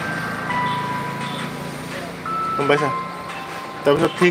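A simple electronic melody of single held beeping tones, stepping in pitch every second or so, over a low steady hum. A man says a short word about two and a half seconds in.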